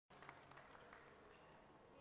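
Faint, scattered applause from a small audience, its claps thinning out after about a second.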